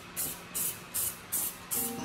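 Aerosol spray paint can sprayed in short, even bursts, about five in two seconds, each a brief hiss.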